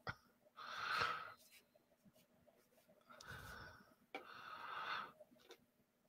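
A person breathing out softly into a microphone three times, with quiet in between.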